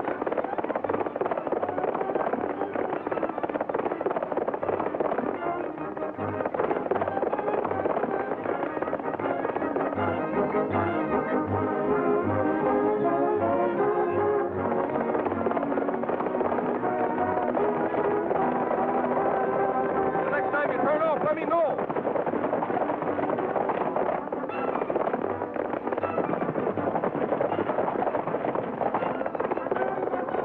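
Orchestral western chase score with brass, played over the steady drumming of galloping horses' hooves, on a dull old film soundtrack with no high end.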